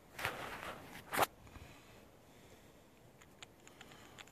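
Handling noises as a small brush-cap bottle and a solar lantern are worked over a glass table: a brief rustling scrape, then a sharp knock about a second in, then a few faint light ticks near the end.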